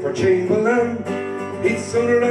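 Steel-string Takamine acoustic guitar strummed in chords, playing the instrumental break of a country-folk song.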